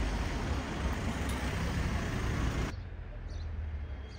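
Village street ambience, mostly car traffic noise with a steady low rumble. It cuts off abruptly about two-thirds of the way in, giving way to a quieter background with a few short bird chirps.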